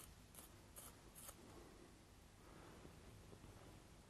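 Near silence with three faint, short scraping strokes in the first second or so: a soft drawing pencil being sharpened.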